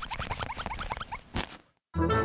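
Cartoon sound effect of plastic ball-pit balls rattling and shuffling as they are dug through, with a quick run of little squeaks. It ends with a single sharp click about a second and a half in.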